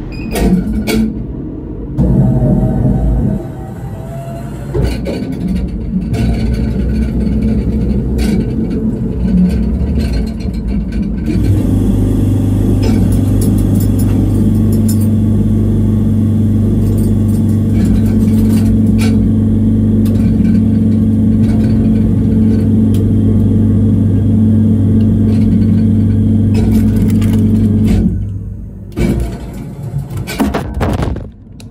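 Meal vending machine working through an order: clicks and shifting mechanical sounds at first, then from about eleven seconds a steady, even hum that stops a couple of seconds before the end, followed by a few clicks.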